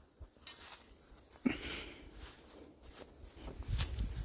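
Faint rustling and light knocks from someone moving about and handling the camera, with a sharper knock about one and a half seconds in. A low rumble rises near the end.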